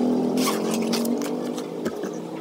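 A motor or engine running with a steady hum that slowly grows quieter, with a few short, sharp ticks over it.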